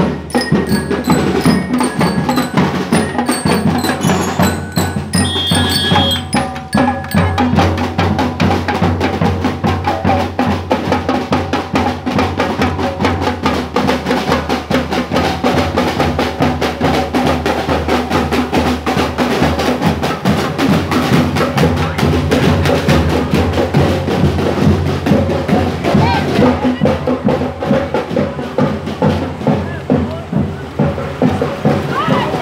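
Marching drum and lyre band playing: bell lyres ringing a tune over snare drums and a bass drum. The lyre notes stand out for the first several seconds, then steady, dense drumming carries the rest.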